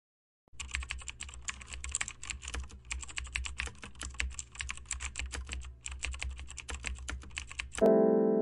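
Typing on a computer keyboard: a fast, uneven run of key clicks that starts about half a second in and stops just before the end, with two brief pauses, over a low steady hum.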